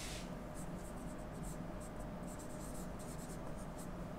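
Marker pen writing by hand on a whiteboard: a faint run of short, irregular strokes as a word is written out.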